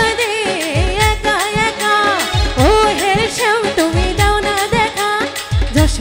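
Woman singing a Bengali baul folk song in ornamented, gliding phrases, with a regular drum beat and instrumental backing.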